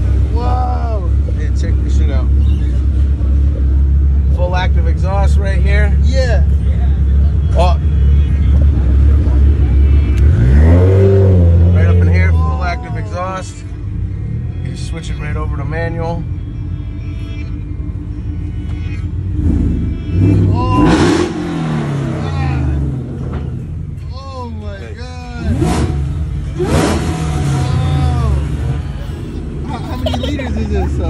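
Supercharged Ford F-150 pickup with active exhaust idling with a loud, steady low rumble, revved once about ten seconds in. After that the engine sound falls much quieter.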